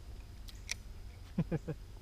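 Two light clicks, then a short three-note voice sound like a brief chuckle, over a low rumble of wind and water.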